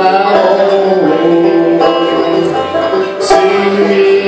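Solo banjo playing a slow melody, its picked notes ringing over one another.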